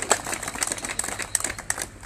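Paper sheets rustling and crinkling as they are handled and turned close to a handheld microphone: a run of irregular sharp clicks and crackles that thins out toward the end.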